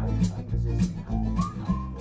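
Background music with a bass line and a steady beat.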